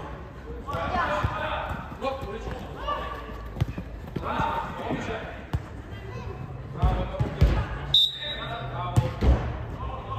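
Voices shouting during an indoor youth football game, over the ball being kicked and bouncing off the turf and boards several times. A short, steady whistle blows about eight seconds in, most likely the referee's.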